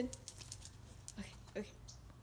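Mostly speech: a woman gives a dog short spoken commands, "spin" and then "okay", over quiet background with a few faint ticks.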